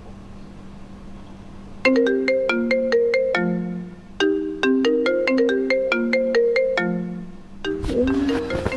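Mobile phone ringing with a melodic ringtone: a short tune of quick pitched notes, starting about two seconds in and repeated. Before it there is only a faint steady low hum.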